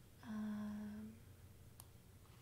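A woman's short closed-mouth hum, one steady note held for about a second, followed near the end by a single faint mouse click.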